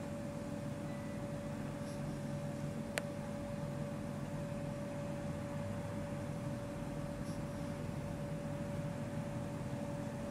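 A steady mechanical hum with a constant mid-pitched tone, broken once by a sharp click about three seconds in.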